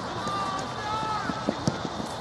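Players shouting across a football pitch during play, their calls distant and indistinct. Two sharp knocks come close together about one and a half seconds in.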